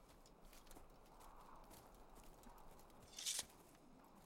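Near silence: faint outdoor ambience with scattered faint clicks, broken by one short hissing rustle about three seconds in.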